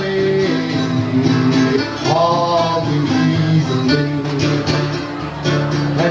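Solo Delta blues on acoustic guitar, picked steadily, with a voice singing along over it.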